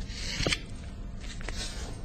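Sheets of paper rustling and being shuffled in two short bursts, each with a light click, over a steady low electrical hum.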